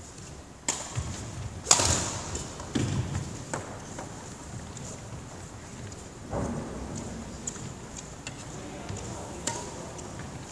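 A handful of sharp knocks in a badminton hall, shuttlecocks struck by rackets, several in the first four seconds with the loudest about two seconds in and one more near the end, each with a short echo.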